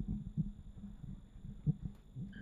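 Handling noise from a handheld microphone being passed over: a few dull knocks with soft rubbing in between, the strongest near the end.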